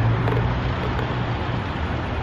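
Steady outdoor background rush with a low hum that eases slightly about a second in.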